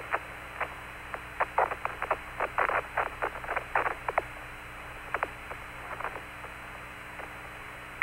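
Open Apollo lunar-surface radio channel with no speech: a steady hiss limited to a narrow band, and a run of short, irregular clicks, several a second, that thins out after about five seconds.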